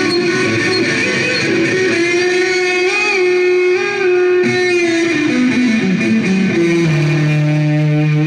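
Electric guitar played live through an amplifier: a lead line of held, bending notes that falls in a run to a low sustained note near the end.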